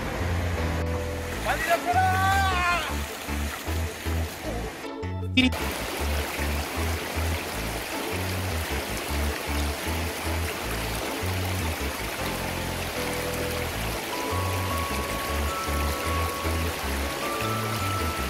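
Background music with a steady beat laid over the rush of a fast-flowing stream. A short wavering, voice-like sound comes about two seconds in.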